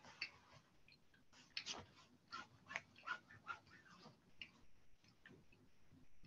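Near silence with faint, irregular clicks and taps, about two or three a second.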